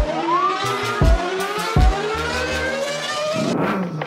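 An engine sound effect accelerating, its pitch rising steadily and dropping back twice as it shifts up through the gears, over music with low bass hits.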